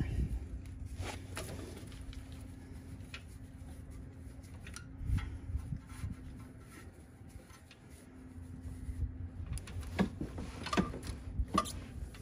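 Hands working an LML Duramax fuel filter loose from under the wheel well: scattered light clicks, knocks and rustling as it is unplugged and spun off by hand, with a busier run of clicks near the end. A faint steady hum lies underneath.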